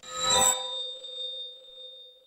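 Transition sound effect: a rising whoosh that lands about half a second in on a bright bell-like chime, which rings on and slowly fades.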